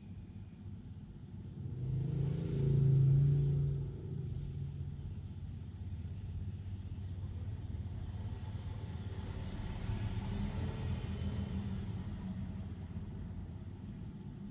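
Road traffic passing close by: the engine rumble of a bus and cars, with a louder low hum about two to four seconds in and a smaller swell around ten seconds.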